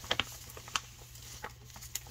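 A few short, light clicks and taps of paper ephemera pieces and a plastic folder being handled and sorted through.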